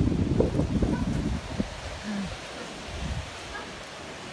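Wind rumbling on the microphone and rustling movement through dune grass for the first second and a half, then a steady wash of lake surf. A neighbouring dog barks faintly in the distance about two seconds in.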